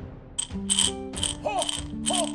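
Plastic polyhedral dice rattling inside a glass mason jar, a quick run of clattering shakes starting about half a second in, with music playing underneath.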